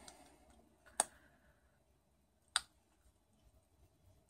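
Two sharp, quiet clicks about a second and a half apart, with little else heard.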